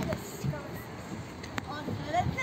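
Faint children's voices and playground background noise, with a single sharp click about one and a half seconds in.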